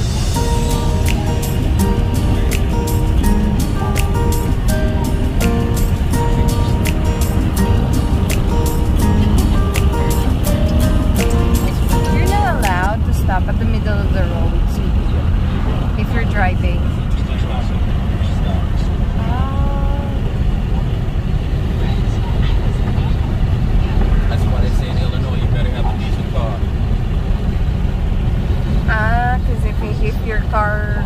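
Steady road and engine noise inside a moving car's cabin, with music playing: a regular beat and held notes for about the first twelve seconds, then a voice in short stretches.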